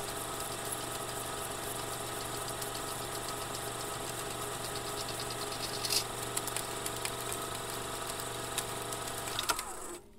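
A steady droning hum made of several held tones, with a few faint clicks, its low part stopping shortly before the end.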